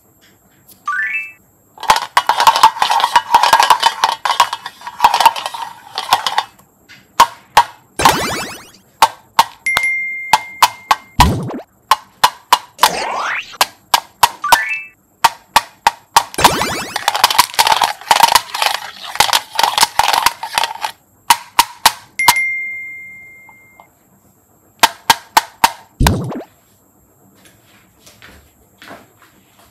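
Plastic beads poured into the cups of a metal muffin tin: a dense rattle of beads on metal, twice for several seconds, with scattered single clicks between. Edited-in sound effects cut in with it: several sliding tones that fall to a low pitch, and a held high chime-like tone twice.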